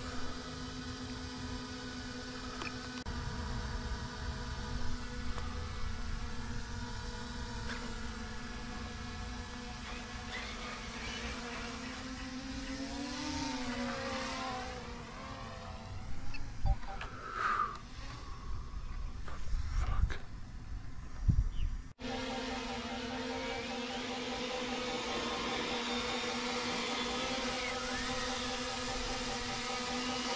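Small quadcopter drone (DJI Mini 3 Pro) hovering close by: a steady propeller buzz whose pitch sags and climbs again about halfway through as it manoeuvres. A few low bumps come in shortly after that.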